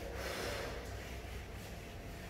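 A blackboard being wiped clean of chalk with a duster: a scrubbing swish, strongest in the first second, then fading.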